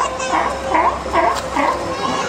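California sea lion barking in a quick series, about five barks in two seconds.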